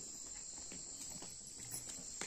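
Faint, steady, high-pitched chorus of insects, with a few faint soft taps.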